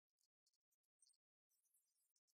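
Near silence, with a scatter of very faint high-pitched clicks and a brief faint hiss near the end.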